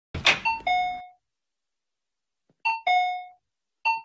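Electronic shop-door entry chime ringing a two-note ding-dong, high then low, set off by the door opening. It sounds three times, each time closer after the last, and the first is preceded by a short noisy burst.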